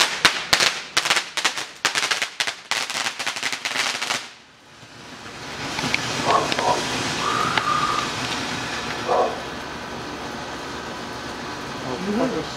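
Firecrackers going off in a rapid, uneven run of sharp cracks for about four seconds. From about five seconds in, a ground fountain firework sprays sparks with a steady hiss.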